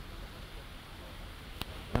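Steady low background noise of an outdoor scene, with a single sharp click about one and a half seconds in.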